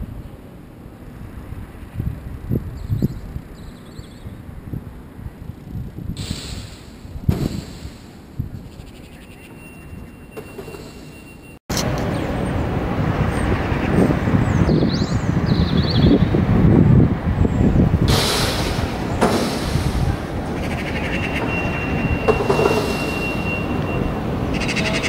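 Outdoor city background noise: a low irregular rumble with distant traffic, getting abruptly louder at a cut about halfway through.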